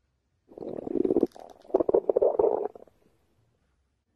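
Loud stomach growl: two long rumbles, the second longer than the first, the sign of an empty, hungry stomach.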